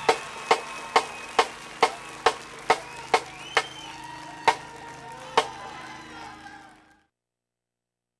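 Marching band drumline clicking drumsticks to keep a marching tempo, sharp wooden clicks about two a second, nine steady clicks, then two more spaced further apart. The sound fades out near the end.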